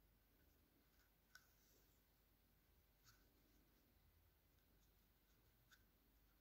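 Near silence: room tone with three faint small clicks from hand sewing, a needle and thread worked through a crocheted doll's face.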